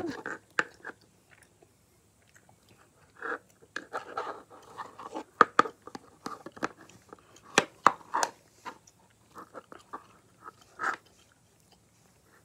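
Sticky glittery purple slime being stretched and pulled between the fingers, giving irregular clicks, crackles and small squelchy pops with short quiet gaps.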